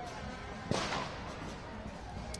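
One sharp crack a little under a second in, over steady crowd noise from people walking in a street.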